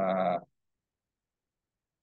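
A man's voice holding one steady hesitation vowel, a drawn-out 'uhh', for about half a second, then silence.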